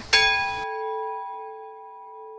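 A single bell-like chime: one sudden strike with several clear tones sounding together, ringing on and slowly fading.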